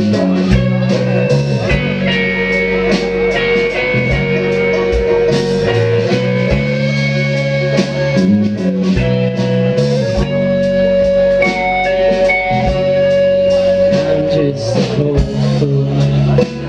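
A live band playing an instrumental passage: banjo, electric guitar and bass guitar over a drum kit, with long held guitar notes over a moving bass line and steady drum hits.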